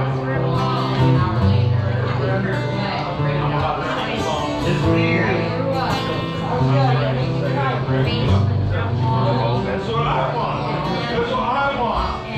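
Acoustic string instruments played loosely between songs, with long held low notes, over people talking in the bar.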